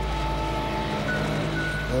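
Background music of soft, held synthesizer chords; one high note gives way to a higher one about a second in.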